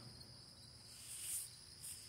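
Crickets chirping in a steady, high-pitched chorus, with a short soft hiss about a second in.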